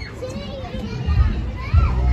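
Children playing: faint children's voices and chatter in the background, with a low rumble underneath that grows from about a second in.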